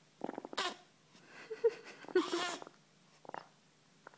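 A baby straining to poop, grunting. There is a creaky grunt near the start and a louder, higher strained vocal sound a little past halfway.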